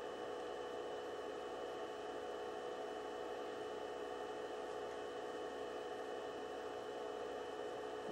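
Low, steady hiss with faint constant hum tones and no distinct events: room tone and recording noise.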